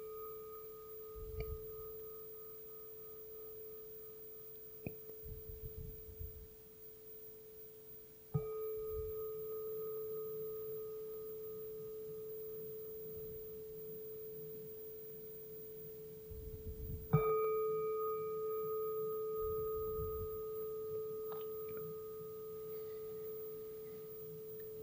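A bowl-shaped meditation bell rings on from a strike just before this moment and is struck again about eight and about seventeen seconds in. Each stroke leaves one long, steady, slowly fading ring. The strokes mark the close of the guided meditation.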